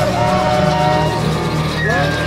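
Spiritual jazz ensemble playing: a steady low drone under wavering melodic lines that glide in pitch, with a higher held note coming in near the end.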